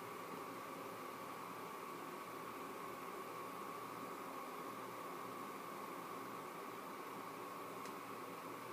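Faint steady hiss with a thin, even high hum underneath: the background noise of the recording, with no distinct sounds.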